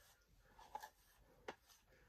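Near silence with two faint, short scratchy rubs, a little under a second in and about a second and a half in: a hairbrush drawn through a section of damp hair.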